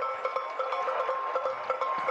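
Trackside crowd ambience at a cross-country ski race, with cowbells ringing on and on as a steady cluster of bell tones and light clatter.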